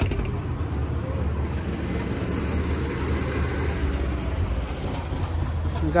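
A steady low mechanical rumble, like an engine idling nearby, with one sharp knock right at the start.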